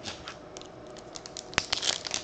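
Foil baseball-card pack crinkling as it is picked up and pulled open at its seam: a run of short crackles, the sharpest about one and a half seconds in.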